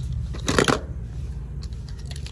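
Small plastic toy cars clattering against one another in a steel bowl as a hand picks one out: one short rattle about half a second in, then a few faint clicks.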